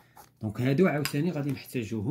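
A man's voice speaking briefly, with a pen scratching on paper as a box is drawn around the written answer.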